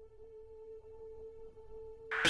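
A faint, steady electronic tone held at one pitch, with a weaker overtone above it.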